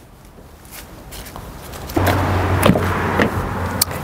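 A few footsteps and knocks as a person climbs out of a car and moves to its rear door, over a steady rushing noise with a low hum that comes in about halfway through.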